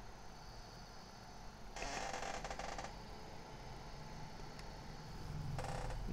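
Faint handling noise: a brief scraping rustle about two seconds in, and another just before the end, as multimeter probes are worked among the cables of a powered-up PC motherboard, over a low steady hum.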